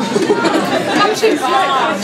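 People talking and chattering, with no music playing.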